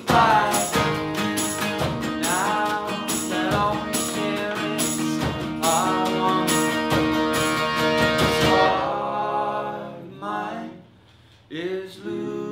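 Live acoustic band music: accordion, strummed acoustic guitars and a tambourine beat under several singing voices. About nine seconds in the percussion and instruments drop out, there is a brief near-silent pause near the end, and then the voices come back in unaccompanied.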